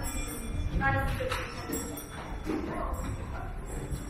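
Indistinct voices of passers-by over a low street hubbub, with one brief voice standing out about a second in.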